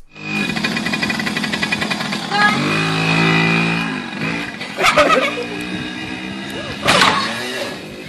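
Music playing over the buzz of a small children's dirt bike engine, then two sharp bangs about five and seven seconds in as the bike crashes into a wall.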